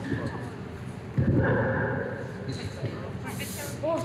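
Voices from the played behind-the-scenes footage, with a woman saying it is cold, and a sudden burst of noise about a second in that lasts about a second.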